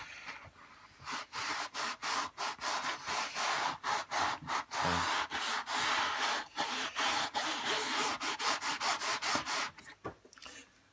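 Cloth rag rubbing back and forth over the cone of a 15-inch RCF bass speaker driver in quick strokes, about three a second. The strokes begin about a second in and stop just before the end.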